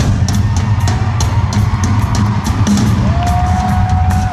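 Drum kit played live in a drum solo: rapid, irregular strokes on drums and cymbals with a steady bass drum underneath.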